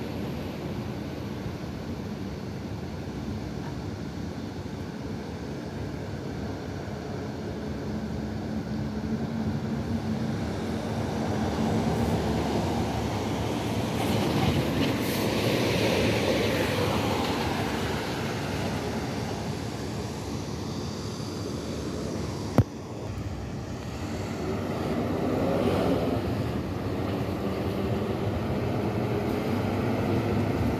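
Road traffic noise at an intersection, with vehicle engines and tyres running steadily. It swells as a car passes close by about halfway through, and again near the end as a city bus's engine draws near. A single sharp click comes about two-thirds of the way in.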